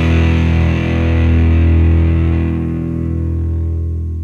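Rock music: a held distorted electric guitar chord ringing out, its treble dying away and the level starting to fall about halfway through as the track ends.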